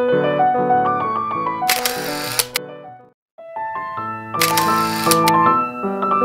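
Background piano music, broken twice by a camera shutter sound effect, about two and a half seconds apart. The music drops out for a moment between the two shutter sounds.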